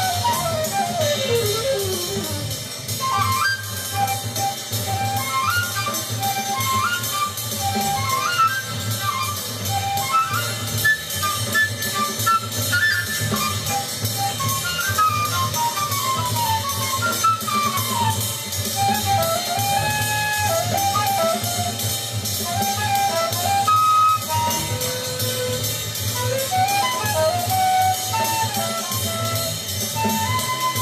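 Avant-garde jazz record playing through the hi-fi: a horn plays fast, winding runs and gliding phrases over bass and drum kit.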